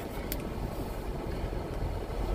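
Steady low rumble of an idling semi-truck heard inside the cab, with one faint click about a third of a second in.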